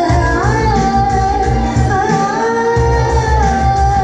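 Malayalam film song: a woman's voice holds one long, slightly wavering note over a bass beat that drops out for a moment in the middle.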